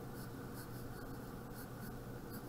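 Pencil drawing on paper: a few short, faint scratching strokes of graphite on a paper worksheet.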